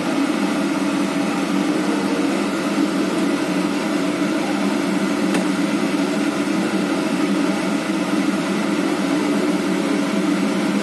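Steady machine hum from a small electric motor, unchanging throughout, with one faint click about halfway.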